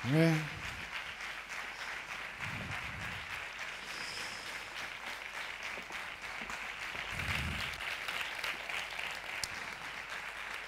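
An audience applauding steadily in a theatre hall, a continuous crackle of many hands clapping.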